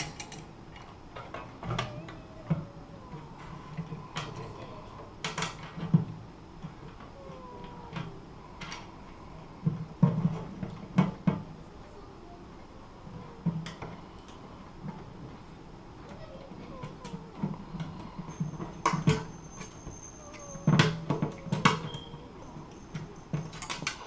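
Metal mounting brackets and bolts of a locking mailbox clicking, knocking and scraping in scattered bursts as the box is worked onto its post bracket and a bolt is fitted, with a few sharper knocks.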